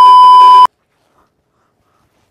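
Loud, steady, high-pitched censor bleep (the test-tone beep that goes with TV colour bars), edited in to cut out the remark just asked to be removed. It stops suddenly about two-thirds of a second in.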